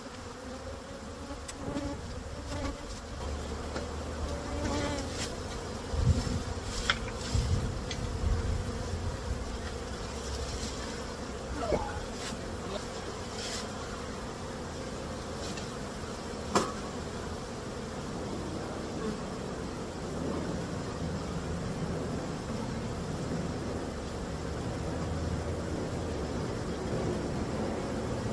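Honeybees buzzing steadily from a swarm caught in a trap box as it is opened. A few sharp knocks and clicks come over the buzz in the first half, from the wooden boxes and frames being handled.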